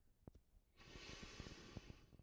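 Faint breath from a saxophonist with the horn at his mouth: a soft, steady hiss that begins a little under a second in and lasts about a second. Before it there is near silence with a few soft clicks.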